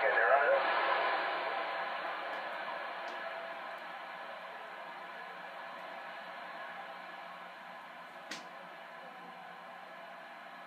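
Radio receiver static: a steady, narrow-band hiss from the transceiver's speaker between transmissions, dying down over the first few seconds after a distant voice cuts off at the start. A single short click about eight seconds in.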